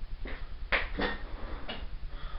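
A few knocks and clatters of someone rummaging through kitchen cupboards, the sharpest a little under a second in.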